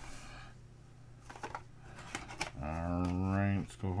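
A cardboard trading-card box being opened by hand, with soft rustling and light clicks from the packaging and the hard plastic case of the card inside. About two and a half seconds in, a man makes a drawn-out vocal sound.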